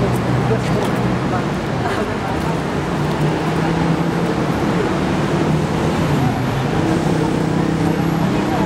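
A steady low machine hum, strongest from about three seconds in, under faint background chatter of people.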